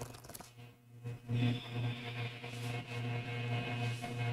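A deck of rune cards riffle-shuffled, a quick run of card clicks right at the start. From about a second and a half in, soft steady ambient background music with a low hum.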